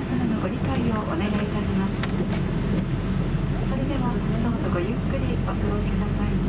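Steady low hum inside a Boeing 777-200 airliner cabin during pushback, with indistinct voices talking over it.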